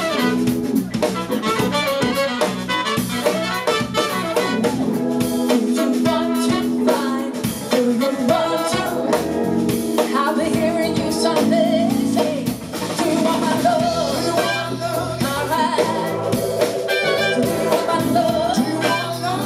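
Live soul band playing: drum kit, bass and electric guitar with keyboard, and saxophone and trumpet horn lines.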